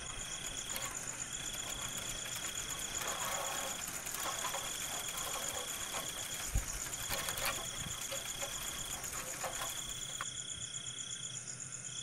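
Dusk chorus of insects and frogs: a steady high trill repeating in calls about two seconds long with short breaks, over a fast pulsing higher buzz. A few faint knocks and a low thump come about six and a half seconds in.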